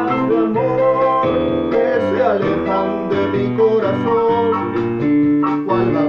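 Electronic keyboard with a piano voice playing an instrumental passage of a bossa nova song, chords and melody changing every beat or two.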